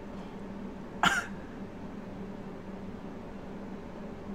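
A man makes one brief throat sound, like a short cough, about a second in, over a steady low room hum.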